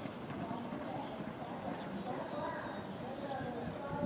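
Hoofbeats of two Thoroughbreds galloping together on a dirt track, a quick, continuous drumming, with faint voices in the background.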